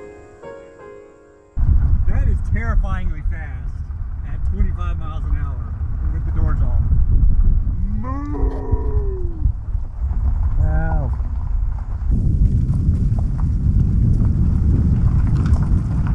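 Cattle mooing several times, one long call rising then falling in pitch about halfway through. The calls sit over heavy wind rumble on the microphone from a car driving with its doors off.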